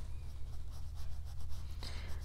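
Flat paintbrush stroking paint onto a canvas shopping bag: soft, uneven scratchy brushing over a steady low hum.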